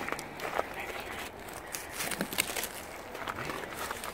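Scattered crunches and small clicks of ice-crusted snow being broken off a car and handled.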